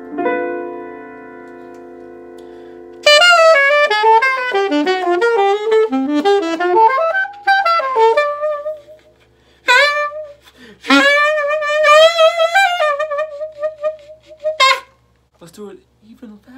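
A keyboard chord is struck and held for about three seconds, then a saxophone plays a fast bebop lick, running down and back up. Two shorter phrases follow, the last ending on a held note.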